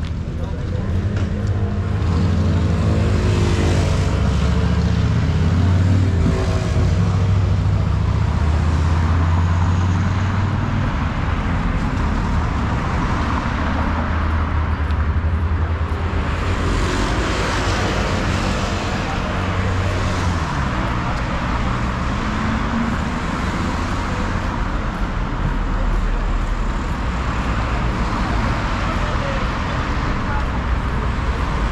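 Road traffic on a city street: cars driving past, with a low engine rumble strongest over roughly the first third, then tyre hiss swelling as vehicles pass.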